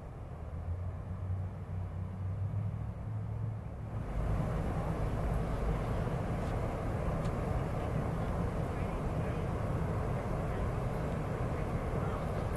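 Steady low outdoor rumble with no distinct source, stepping up abruptly about four seconds in and staying louder, with a few faint ticks.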